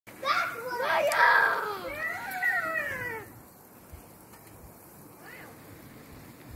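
A child's high-pitched calling out with no clear words, its pitch sliding up and down, for about three seconds before it stops.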